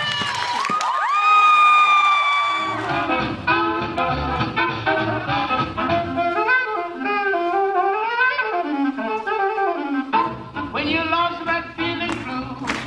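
Swing jazz band music: a horn scoops up to a long held note that ends about three seconds in, and a different up-tempo swing tune with bass and horns takes over.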